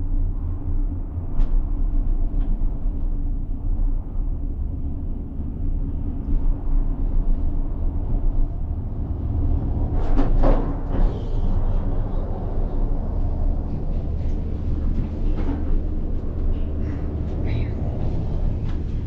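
Steady low rumble and hum from inside a moving monocable gondola cabin running along the haul rope. About ten seconds in, a burst of rattling and clanking comes as the cabin enters the station, followed by lighter scattered clicks as it rolls through the terminal.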